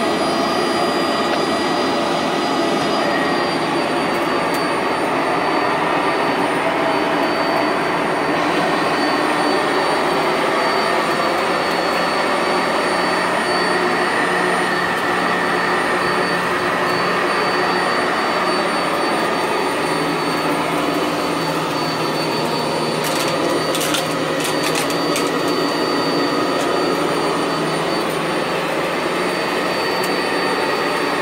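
Sanitaire SC679J commercial upright vacuum cleaner running steadily over carpet, its motor giving a high whine as it picks up clumps of lint and debris. A few short high ticks come about three-quarters of the way through.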